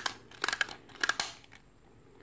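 Plastic toy spin-top launcher being wound by hand, giving two short runs of quick ratcheting clicks about half a second apart.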